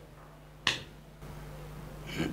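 A single sharp click about two-thirds of a second in, against quiet small-room tone.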